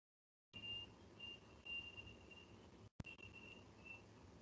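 Near silence: faint call-line hiss from an open microphone with a thin high whine that comes and goes, and a single click about three seconds in.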